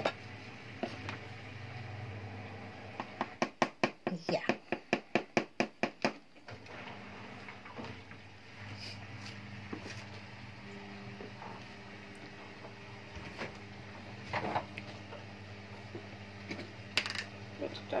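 A quick run of sharp taps, about four a second for some three seconds, from a plastic container of plain flour being knocked to shake the flour out into a mixing bowl. After it a low steady hum, with two single knocks near the end.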